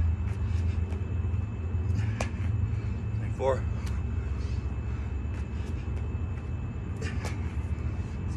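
A man doing burpees on an exercise mat, with scattered short knocks and taps as he drops to the mat and jumps back up, over a steady low rumble. He says one counted number aloud about halfway through.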